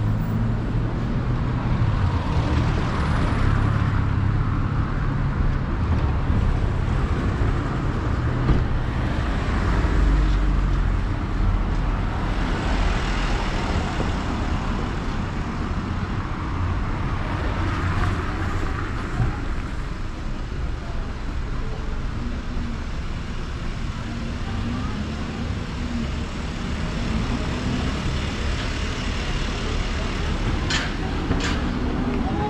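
City street traffic: a steady rumble of car engines and tyres, with several vehicles passing close by that swell and fade.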